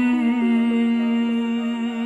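Wordless hummed vocal music: one low note held steady, with a melody stepping in pitch above it.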